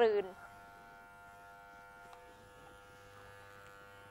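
Electric hair clippers running with a faint, steady buzz while cutting hair over a comb.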